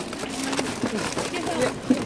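Several people talking at once in low, overlapping voices, with a single sharp click or tap just before the end.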